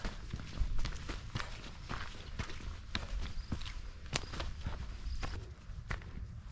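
Footsteps of a hiker walking steadily along a mountain trail, about two steps a second.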